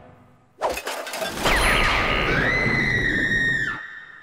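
Loud cartoon sound effect: a noisy, crash-like burst that swells about half a second in, with a high wavering tone over it that settles into a steady held note, then cuts off suddenly just before the end.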